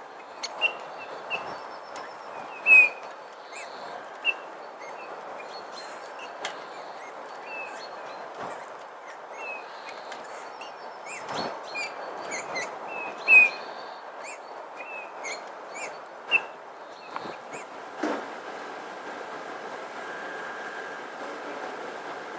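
Small birds chirping, many short high chirps scattered throughout, over a steady outdoor hiss. A few sharp clicks stand out, the loudest about three seconds in and again at about thirteen seconds.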